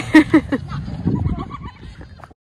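A person laughing briefly at the start, over a low rumble of wind on the microphone.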